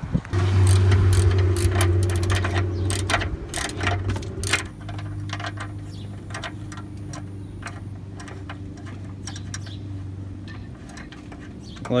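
A steady low mechanical hum, loud for the first few seconds and then quieter, fading out before the end. Scattered sharp metallic clicks and ticks of a hand wrench working on bolts sound over it.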